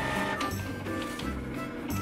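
Background music playing over a Canon multifunction inkjet printer running as it feeds out a printed page.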